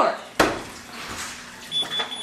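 A front door being unlatched and opened: a sharp click of the latch, then about a second later a softer bump with a short, high, steady beep.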